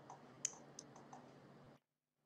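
Near silence broken by four or five faint, short clicks, the loudest about half a second in; the sound cuts out entirely near the end.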